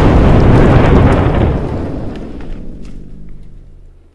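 Added crash-and-rumble sound effect, a loud noisy rumble that fades away over about three seconds as foam blocks are knocked off a toy track.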